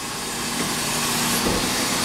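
Natural-gas-powered rear-loading garbage truck running at the hopper: a steady hiss that grows louder, with a low hum setting in about a quarter of the way through and a dull thump near the end.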